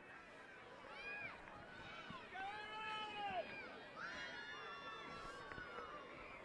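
Distant shouting voices: several short, high-pitched shouted calls, with one longer drawn-out call about two seconds in, over faint background crowd noise.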